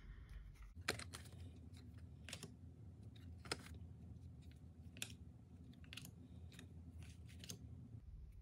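Tarot cards being handled and laid down one at a time: faint, scattered soft taps and card slaps, about nine in all, over a low steady room hum.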